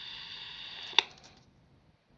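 Steady hiss from the Sony Walkman WM-GX322's small built-in speaker, cut by a single sharp click about a second in as the set is switched off, after which the hiss dies away to near silence.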